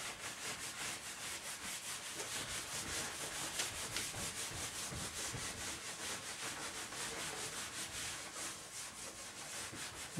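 A felt eraser rubbed back and forth across a whiteboard, wiping off marker writing: a steady scrubbing at about four strokes a second.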